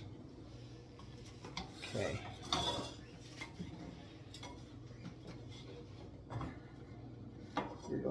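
Kitchen utensils and a plate being handled around a stovetop: a few separate light clinks and clatters as a spoon and spatula are set down and picked up, over a low steady hum.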